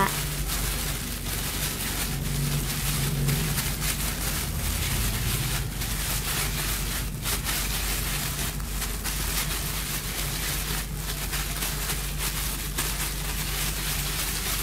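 Disposable plastic food-prep gloves rustling and crinkling as hands knead and shape soft sweet potato dough, over a steady hiss and low hum.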